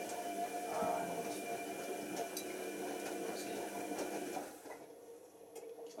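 Tricity Bendix AW1053 washing machine's motor turning the drum through the wash, a steady hum with a faint high whine, which stops about four and a half seconds in at the end of the wash tumble, just before the drain stage.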